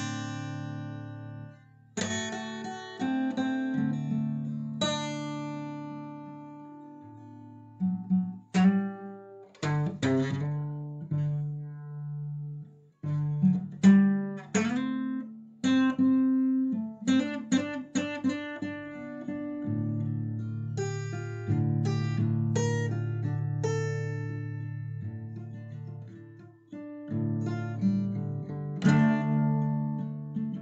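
Background music played on a plucked acoustic guitar: picked notes and chords that ring and fade, changing every second or so.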